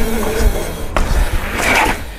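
A mountain bike rolling on asphalt. The rear freehub's buzz fades out early as the bike coasts, over a low rumble of tyres on pavement. A single sharp knock comes about a second in.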